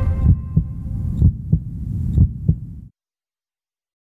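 Closing bars of a TV programme's intro theme music: a deep hum with low pulses coming in pairs, cutting off abruptly about three seconds in, then silence.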